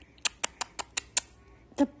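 Baby passing gas: a quick run of about seven small, sharp popping farts within a second.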